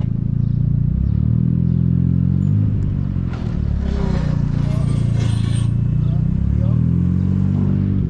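Mazda Miata's four-cylinder engine and exhaust pulling away under acceleration. The revs rise, drop back at a gear change about three seconds in, and rise again near the end, with a rushing noise in the middle.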